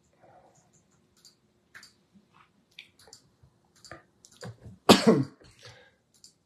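Faint computer keyboard taps as values are typed in, then a loud, short cough from a man about five seconds in, followed by a smaller second one.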